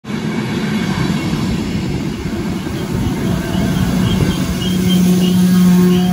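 Belgian electric multiple-unit passenger train close by: a rumble with a steady electrical hum that grows louder toward the end.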